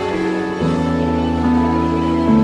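Background music: slow, sustained chords with a chord change about half a second in.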